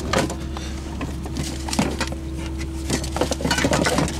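Objects clattering and clinking as a hand rummages through a cab storage drawer full of plastic containers and metal gas canisters, in irregular clusters of knocks. A steady low hum runs underneath.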